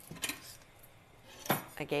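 Metal kitchen utensils clinking as they are picked up off a countertop: a few light clicks near the start and one sharper click about one and a half seconds in.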